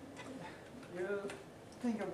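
Speech only: an audience member's voice, fainter and more room-sounding than the presenter's, starting to ask a question.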